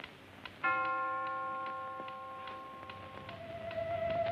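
A mantel clock ticking steadily, then striking a single chime about half a second in that rings on and fades slowly: the clock striking one. Near the end a wavering, eerie musical tone swells in over the ticking.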